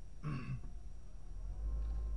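A person in the car clearing their throat once, briefly, over the steady low rumble of the car cabin.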